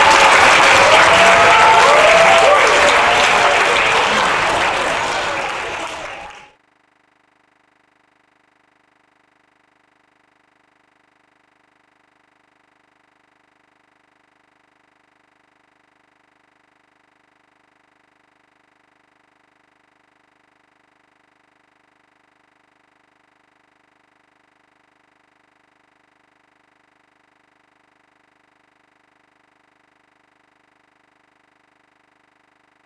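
Audience applauding in a hall, dying away about six seconds in and then cutting off to near silence for the rest of the time.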